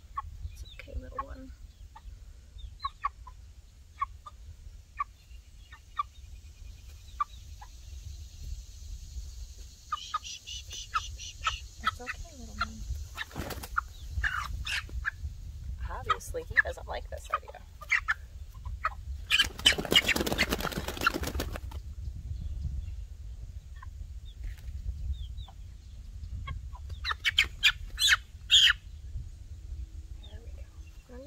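Young chick cheeping in short scattered calls as it is held and handled, with a louder rustling stretch about two-thirds of the way through and a steady low rumble of wind on the microphone.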